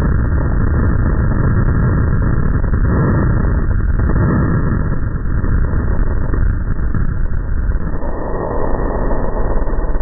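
Free-fall wind rushing over a helmet camera's microphone, played back slowed down so it becomes a deep, steady rumble with a faint low hum.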